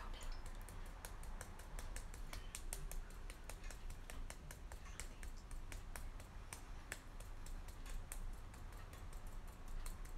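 Rapid, irregular light clicks and taps, several a second, over a low steady hum.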